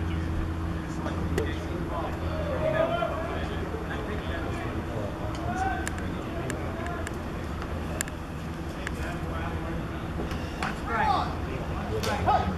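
Indistinct voices of players and onlookers calling and chattering over a steady low mechanical hum, with a few sharp clicks in the middle and a louder call near the end.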